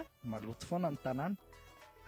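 A man's voice into a handheld microphone: a short stretch of speech that stops a little after a second in, followed by a pause.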